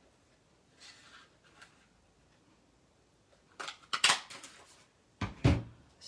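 A handheld craft paper punch cutting a stamped strawberry out of cardstock: a crunch and sharp clacks about three and a half to four seconds in, then two more sharp clacks near the end. Faint paper rustling comes before.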